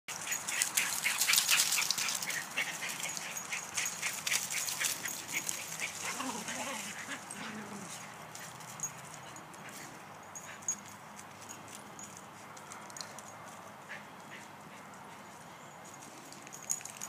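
Two dogs running and scuffling in play across dry fallen leaves on grass, with dense rustling and crunching through the first half, fading to occasional rustles later. About six seconds in, one dog gives a short, wavering vocal sound.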